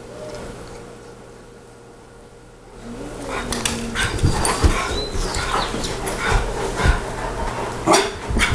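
A Saint Bernard and a small dog at play, with short barks, yips and whines mixed with scuffling knocks, starting about three seconds in after a quiet start.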